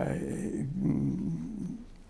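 A man's long, drawn-out filled pause, a low "uhh" held for most of two seconds that fades out near the end.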